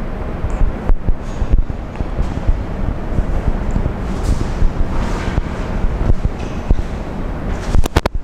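Loud, gusting low rumble of air buffeting a clip-on lapel microphone, with no clear pitch.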